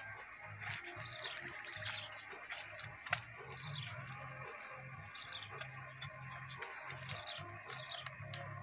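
Soft background music with a low, stepping bass line over a steady high-pitched insect drone and faint bird chirps outdoors. A few sharp clicks come from the wooden hive box being handled as its lid is lifted, the loudest about three seconds in.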